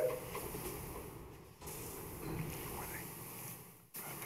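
Quiet room tone of a meeting chamber, with a sharp click at the very start and faint scattered rustling as people walk to a podium.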